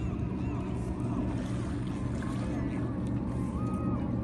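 Steady rush of creek water under a crowd of birds giving short arched calls, several a second and overlapping.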